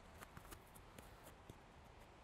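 Near silence, with a few faint soft taps of a footballer's feet and ball touches on grass.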